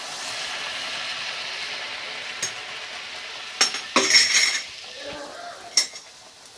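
Puri deep-frying in hot oil in a steel kadai, a steady sizzle. A steel ladle clinks and scrapes against the pan, once early on and in a loud cluster from about the middle, with one more clink near the end; the sizzle is quieter after the cluster.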